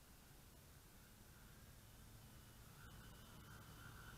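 Near silence: faint wind rumble on the microphone and a faint steady hum from a distant quadcopter's RCTimer 5010 motors and 17-inch props, growing a little louder near the end as it flies closer.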